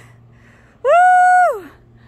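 A woman's single long, high-pitched "woo!" whoop of excitement about a second in, held level and then dropping off at the end.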